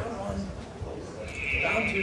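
Faint voices in a large room, with a steady high-pitched whine coming in a little past halfway.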